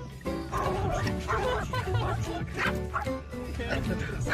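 A small dog, likely a Yorkshire terrier puppy, barking and yipping in a run of short barks over background music.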